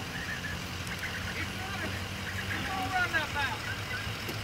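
Quiet outdoor background with a low steady hum that fades out about two and a half seconds in, and a faint distant voice about three seconds in.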